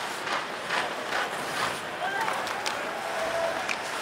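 Ice hockey arena sound during live play: steady crowd murmur with short sharp clacks and scrapes of sticks, puck and skates on the ice.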